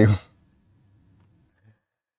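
A man's spoken word ends, then near silence with a faint low hum and a single faint click about one and a half seconds in.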